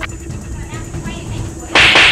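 A single sharp whoosh sound effect near the end, over a faint steady background hum.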